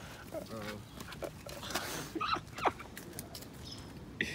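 A dog begging for a bite of fruit, making short snuffling sounds and a couple of quick high whines a little past halfway.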